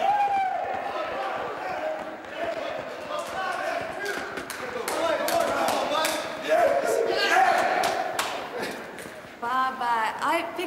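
A group of men shouting and hollering without clear words, with repeated thumps, slams and clattering footsteps echoing in a concrete stairwell.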